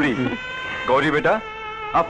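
Speech: short spoken phrases from the characters, over a steady background tone that fades about halfway through.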